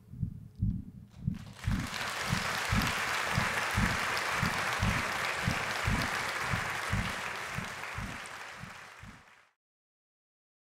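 Concert audience applauding, swelling in about a second in and slowly fading. Steady low thumps, about three a second, carry on underneath from the end of the song. The sound cuts off suddenly near the end.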